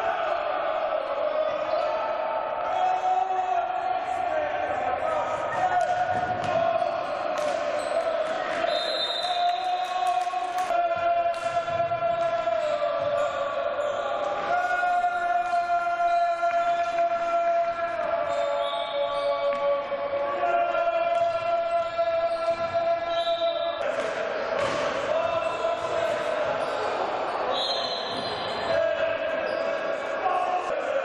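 Indoor hockey play in an echoing sports hall: the ball and sticks knocking on the wooden floor, with chanting from the stands held on long notes.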